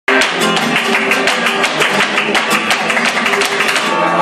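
Flamenco guitar playing a piece in alegrías rhythm with sharp, rhythmic hand-clapping (palmas), cutting in abruptly at full volume.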